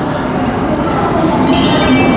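Busy indoor public-space din: crowd chatter with metallic clinks. A high ringing joins about a second and a half in.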